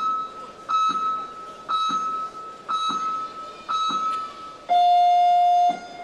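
Electronic round-timer beeps counting down to the start of a boxing round: five short high beeps about a second apart, then one long, lower and louder beep that signals the round is under way.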